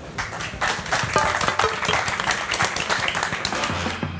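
Audience applauding, many hands clapping at once. Music comes in under the applause near the end.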